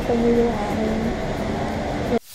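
A woman speaking Tagalog close to the microphone, over a steady low background noise.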